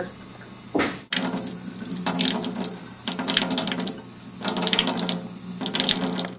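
Tap water running into a stainless steel sink, the splashing swelling and easing unevenly, with a brief dip about a second in.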